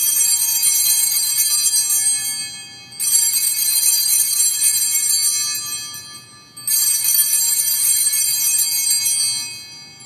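Altar bells rung in three rounds about three seconds apart. Each round is a high, bright ringing that fades away. They mark the elevation of the host at the consecration.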